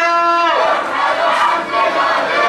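A crowd of marchers chanting slogans together: a long held syllable for about half a second, then a looser, rougher shout of many voices.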